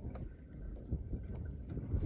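Wind buffeting the microphone, a low rumble, with a few faint ticks.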